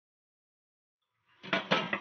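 After a silent stretch, a few quick clinks about one and a half seconds in: a glass pot lid knocking against the rim of a stainless steel pot as it is lifted off.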